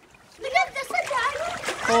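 Water splashing in a shallow inflatable paddling pool as children move about in it. The clearest splash comes near the end, under voices.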